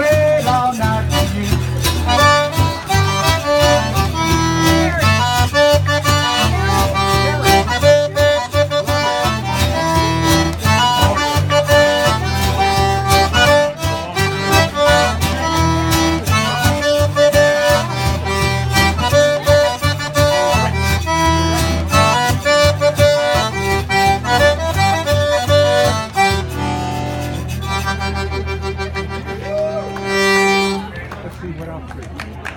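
Zydeco band playing an instrumental passage: button accordion leads over strummed acoustic guitar to a steady dance beat. Near the end the beat drops out and long notes are held.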